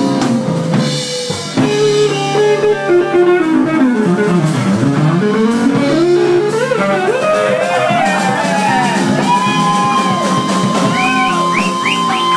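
Live rock band with drum kit and rhythm guitar under an electric guitar lead that bends its notes. About four seconds in the lead slides down and back up, and later it holds one long note with more bends around it.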